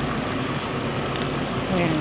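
Chicken sautéing in oil in a stainless steel pot on the stove: a steady sizzling hiss over a low hum.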